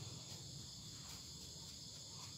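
Faint, steady high-pitched chirring of crickets, with soft rustling of damp potting soil pressed by a gloved hand into a foam seedling tray.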